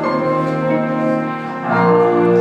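A live band playing sustained chords, with piano and upright bass on stage. The sound dips briefly about one and a half seconds in, then swells back up.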